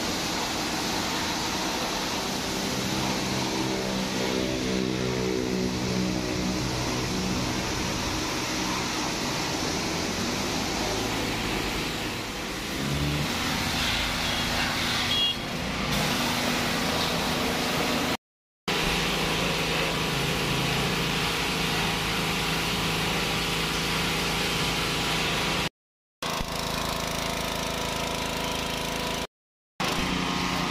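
Pressure washer running: its motor-driven pump hums steadily under the hiss of the high-pressure water jet spraying down a motor scooter. The sound drops out briefly three times in the second half.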